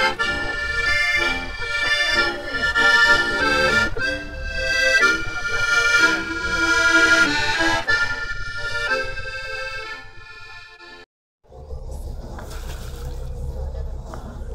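Accordion playing a lively tune of chords and melody, fading about ten seconds in. It then cuts off suddenly to a steady low rumble and hiss of outdoor noise.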